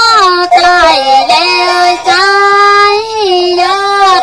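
A woman singing Tai Lue khap in a high voice, holding long notes and sliding between them, with short breaks between phrases.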